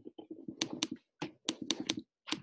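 Typing on a computer keyboard: a quick, irregular run of key taps in short clusters.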